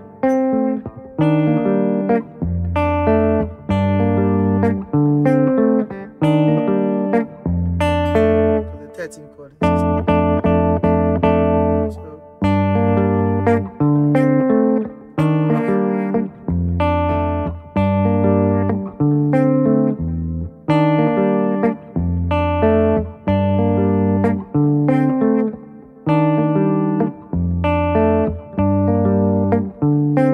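Clean electric guitar on a single-cutaway solid-body, picking through a chord progression in B-flat major, with notes picked over a low bass note in a phrase that repeats every couple of seconds.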